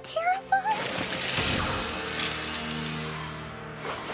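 Cartoon sound effect of a giant hairspray can spraying: a loud hiss that starts about a second in and fades away near the end, over background music. A few short high voice sounds come just before it.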